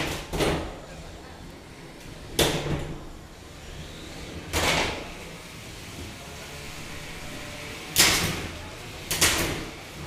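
Impacts between 3lb combat robots in the arena: several sharp metallic bangs a couple of seconds apart, each with a short ring, the loudest about eight seconds in.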